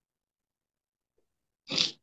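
Silence, then near the end one short, sharp, noisy breath from a tearful woman.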